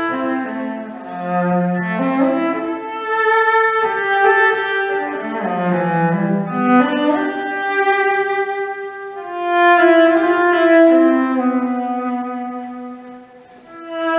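Solo cello, bowed, playing a slow, sustained melody in the low and middle register over layered loops of cello phrases. Several notes sound at once, and the music dips briefly near the end.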